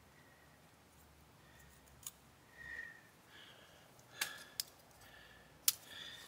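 A multi-tool cutting off the ends of a rope tire plug that stick out of the tread: a few short, sharp snips, the clearest just after four seconds in and near the end.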